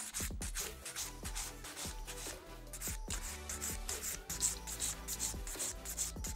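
Hand nail file rasping over an acrylic nail in repeated short strokes, bevelling the nail's surface down toward the tip, with background music underneath.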